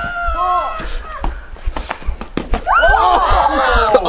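High-pitched shrieking and laughing voices of teenagers. A loud, sustained shriek comes in the last second or so as a girl is hit by the ball.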